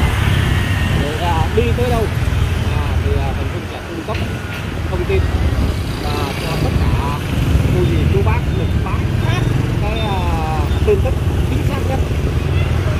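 Steady low rumble of road, engine and wind noise from a vehicle moving through city street traffic.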